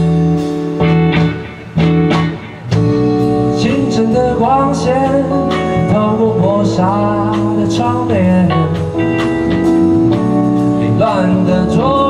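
Live band playing a bluesy instrumental passage between sung lines: a guitar-led lead line with bending notes over keyboard and bass, with two brief breaks in the first few seconds.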